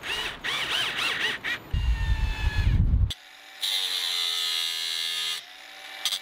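Power drill driving long screws into a rubber ATV tire, its motor whine rising and falling with each screw. About halfway through, an angle grinder takes over, running steadily as it cuts off the screw tips sticking out of the tread.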